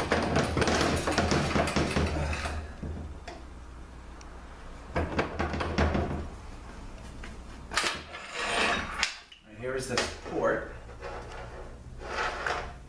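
Metal parts scraping and clanking inside an aluminium automatic-transmission case as a stuck gear assembly is worked loose and pulled out by hand. The noise comes in bursts: at the start, again about five seconds in, and once more around eight seconds in.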